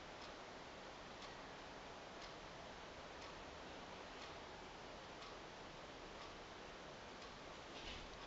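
Faint ticking, about once a second, over low steady room hiss.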